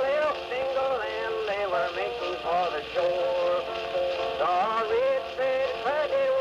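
Old-time country music playing acoustically from a late-1920s Edison Blue Amberol cylinder record on an Edison cylinder phonograph: a wordless melodic passage between verses, with the narrow, boxy sound of early acoustic recording.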